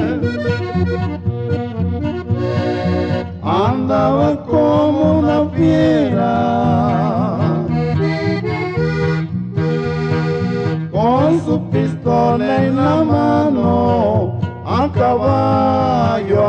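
Norteño music instrumental break: an accordion plays quick melodic runs and trills over a steady, regularly pulsing bass line.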